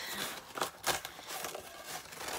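Faint handling noise: a few light clicks and rustles as things are moved about on a work table.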